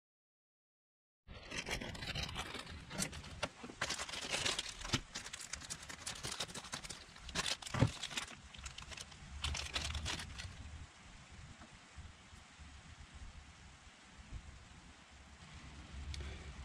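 Plastic parts bag crinkling and rustling as a new rubber oil seal is handled and unwrapped by hand, a run of sharp crackles starting about a second in and thinning out in the last few seconds.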